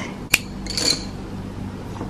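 Wooden pencils knocking against each other as they are handled: one sharp click, then a brief light clatter just under a second in.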